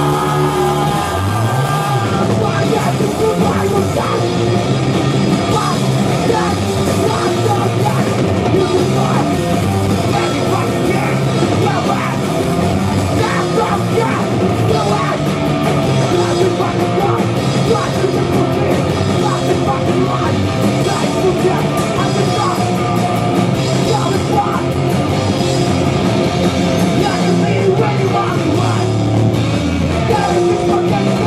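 A rock band playing live and loud: distorted electric guitars, bass and a drum kit, with a singer on vocals.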